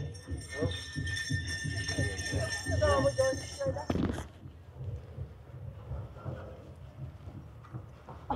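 People's voices over a steady high ringing for the first half. The sound breaks off suddenly about four seconds in, leaving a quieter background.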